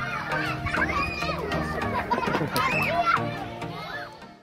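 A group of children calling out and chattering as they play, their high voices rising and falling, over steady background music.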